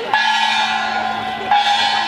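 Small handheld gong struck twice, about a second and a half apart, each strike ringing on with a bright metallic tone.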